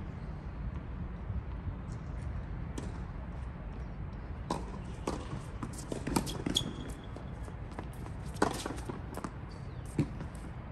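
Tennis balls struck by rackets and bouncing on a hard court during a rally: a string of sharp pops from about four and a half seconds in, the loudest near eight and a half seconds, over a steady low rumble.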